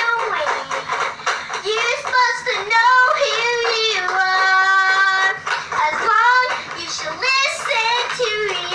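A young girl singing in a high voice, her pitch sliding up and down, with one long held note about halfway through.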